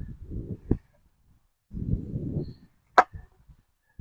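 A plastic fuse box cover being handled: low rumbling noise on the microphone in two stretches, and one sharp plastic click about three seconds in.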